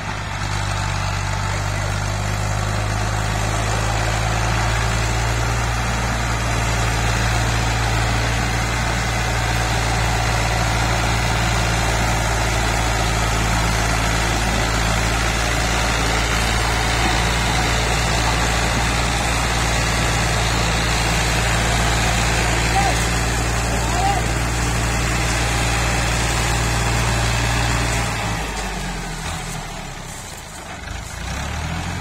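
Fiat farm tractor's diesel engine running steadily under heavy load as it pulls a trailer piled high with sugarcane, easing off near the end.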